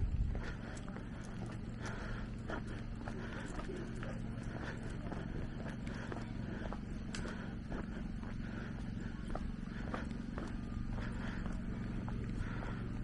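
Footsteps on a gravel and stone path, a step roughly every half second to second at walking pace, over a steady low hum.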